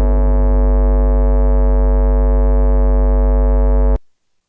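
Surge synthesizer's 'Behemoth' bass patch, played in the Surge PatchPlayer module for VCV Rack, holding one deep note rich in overtones. The note stays steady and then cuts off suddenly at the very end.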